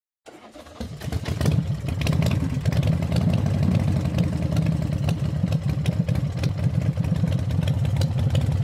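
A vehicle engine starting up in the first second and then running steadily with a fast low pulsing.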